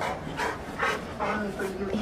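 A dog panting in quick breaths, about two or three a second, with a faint low whine in the second half while she begs for food.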